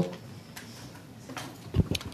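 Quiet room tone picked up by a desk microphone, with a few faint clicks and a short low thump near the end.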